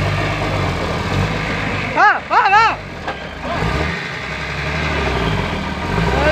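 Diesel engine of a loaded dump truck running under load as the truck drives over soft dirt, a steady low rumble that swells slightly in the first second. Men shout briefly twice over it, about two seconds in and near the end.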